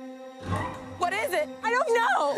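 Trailer score holding a steady drone, with a deep rumble swelling in about half a second in. From about a second in comes frantic screaming that sweeps wildly up and down in pitch.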